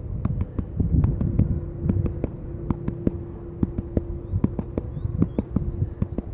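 A green plastic gold pan of wet sand being tapped by hand in quick, irregular taps, several a second, with a low thud under each: tap-and-wash panning, which works the heavy gold up the pan while the lighter material washes down.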